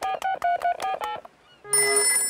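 A cartoon mobile phone's keypad beeping as a number is dialled, a rapid run of about eight short tones. Near the end a telephone starts ringing.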